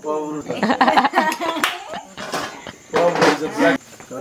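Several people talking over one another in lively chatter, with a few sharp taps among the voices.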